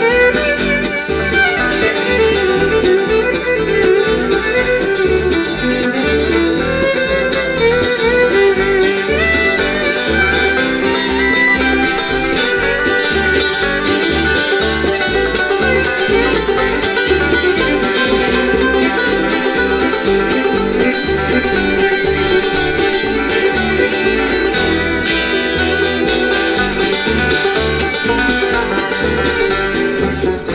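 A live country band plays an instrumental break. A fiddle leads with a wavering melody over strummed guitar and a steady pulsing bass line.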